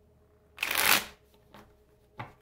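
A tarot deck riffle-shuffled: the two halves are riffled together in one quick ripple of cards lasting about half a second, followed by a faint tap as the deck is squared.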